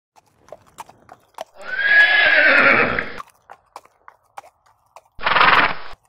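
A horse whinnying: one long call of about a second and a half, preceded by scattered light clicks and followed near the end by a shorter, noisier burst.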